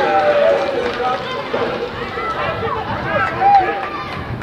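Many overlapping voices shouting and calling on a football pitch, mostly high children's voices, with one louder shout about three and a half seconds in.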